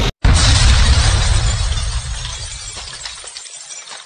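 A sudden crash like shattering glass, a title-card sound effect, comes in about a quarter second in after a brief dropout. It fades away slowly over about three seconds.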